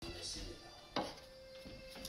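Quiet handling at an open refrigerator, with one sharp click about a second in and a faint steady tone in the second half.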